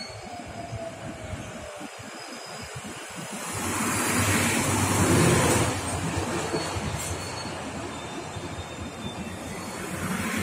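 A JR Chūō Rapid Line electric commuter train running into Ochanomizu station and slowing along the platform. Its rumble swells to its loudest about four to five seconds in, then eases to a lower, steady level.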